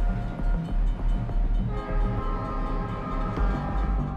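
A train passing close by, heard over background music with a steady low beat.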